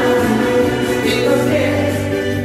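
A Korean trot song sung live into a handheld microphone over a karaoke backing track with a steady bass line; the voice holds long notes and moves to a new note about one and a half seconds in.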